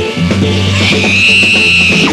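Live funk band playing a tight groove: bass line and drums, with a long high held note from about three quarters of a second in until the end.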